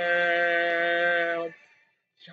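A young man singing one long held note, steady in pitch, which stops about a second and a half in.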